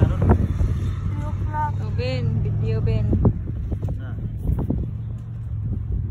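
A person's voice rising and falling in pitch between about one and a half and three seconds in, over a steady low hum that stops a little after three seconds, with scattered short knocks.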